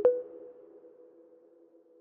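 Electronic logo sound effect: a sharp hit followed by a ringing, ping-like tone that slowly fades away.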